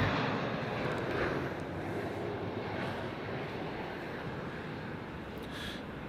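Porsche Boxster S 3.2-litre flat-six idling steadily through its twin exhaust, growing gradually fainter.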